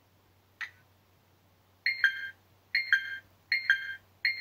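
A Flysky Noble radio transmitter's built-in speaker sounding electronic beeps. A single short blip comes first. From about two seconds in, a two-note beep repeats about every 0.8 s, three times.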